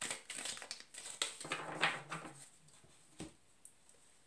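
A deck of tarot cards being shuffled by hand: a run of papery riffling and rustling that stops after about two and a half seconds, then a single soft tap a little later.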